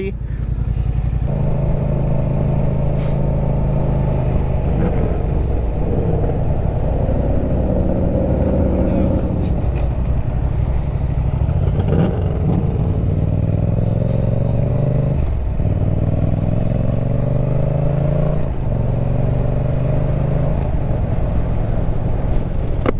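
Yamaha MT-07 parallel-twin engine through an aftermarket Yoshimura exhaust, heard while riding. It accelerates with its note rising, then drops at several points as it shifts up through the gears.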